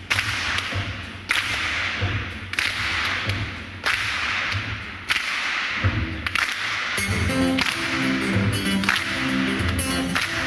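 Sharp hand claps, about one every second and a quarter, each ringing on in a reverberant hall, over a low pulsing beat. About seven seconds in, an acoustic guitar starts playing plucked notes.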